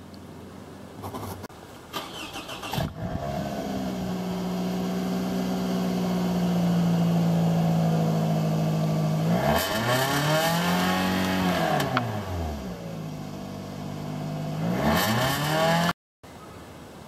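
2007 Toyota Camry SE engine heard through its factory muffler at the tailpipe. It starts about three seconds in and idles steadily, then is revved up and back down once. A second rev begins near the end.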